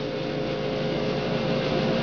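Portable dehumidifier running: a steady fan rush with a steady humming tone.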